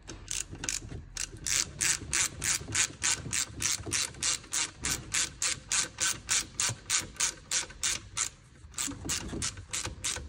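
Hand ratchet with a hex-bit socket clicking in quick, even strokes, about four a second, as the bolt of a new front brake caliper is run in. It pauses briefly near the end, then picks up again.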